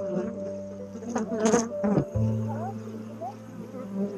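Honey bees buzzing close to the microphone around busy hives: a steady low drone that breaks off briefly about two seconds in and then resumes.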